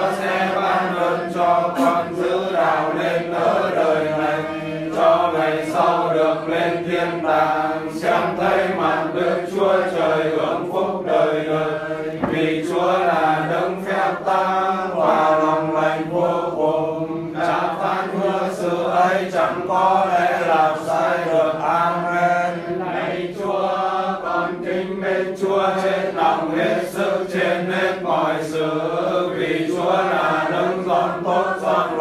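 Voices reciting Vietnamese Catholic prayers together in a sing-song chanted style, without pause.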